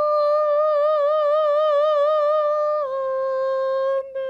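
A woman singing unaccompanied, holding a high note with vibrato for nearly three seconds, then dropping a step to a slightly lower note held steady.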